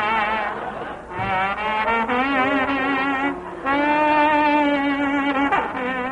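Dance-band horns in a 1940s radio-show recording, playing held chords with vibrato, with brief breaks between phrases about a second in and again about three and a half seconds in.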